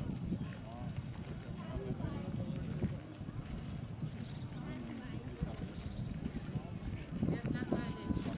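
Outdoor park ambience: indistinct voices of people talking at a distance, with short high chirps of small birds scattered through, more of them near the end, over a low rumble.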